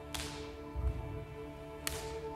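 Sustained orchestral notes held under two sharp whip-like cracks, one just after the start and one near the end, with a low thud in between.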